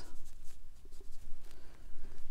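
A watercolour brush stroking across watercolour paper as a stripe of paint is laid down.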